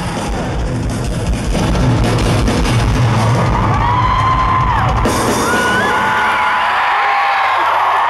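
Live pop-punk band at the close of a song, drums and guitars pounding for the first few seconds. Over it an arena crowd screams and cheers, and the cheering carries on as the band's low end dies away near the end.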